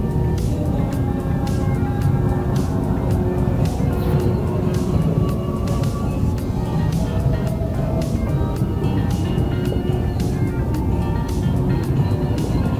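Background music with a steady beat and held melodic notes.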